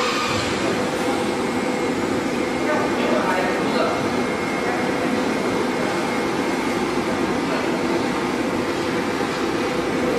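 Heat-shrink tunnel running: a steady mechanical drone from the machine's hot-air blowers and roller conveyor, even in level throughout.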